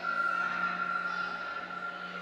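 Ambient electronic drone: a steady low hum under a high sustained tone that comes in suddenly at the start and slowly fades.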